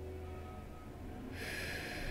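A woman's breath, a soft rush through the nose about a second and a half in, over a low steady room hum.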